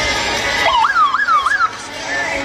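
A siren wailing quickly up and down, about four sweeps in a second, then cutting off suddenly.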